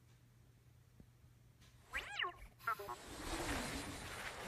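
BB-8 toy droid's electronic sounds: near silence at first, then about halfway in a warble that rises and falls, a quick run of short beeps, and a steady rushing noise that runs on after them.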